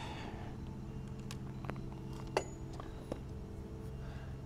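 A few light clicks and clinks of small metal tool-kit parts being handled, the sharpest about two and a half seconds in, over a steady low hum.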